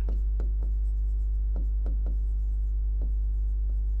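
Chalk writing on a chalkboard: a string of short, irregular taps and scrapes as letters are written, over a steady low hum.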